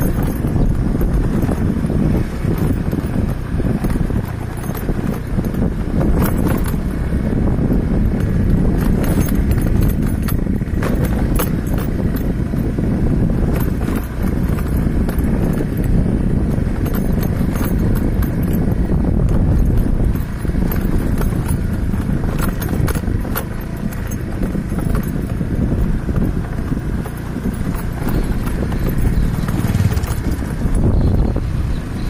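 Steady low rumble of a vehicle travelling over a broken, potholed gravel road, with frequent knocks and rattles from the bumps.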